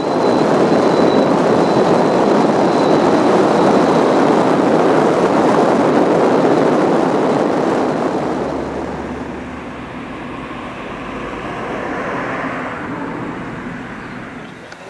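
Steady road and wind noise from a car driving along a road, getting quieter about eight seconds in.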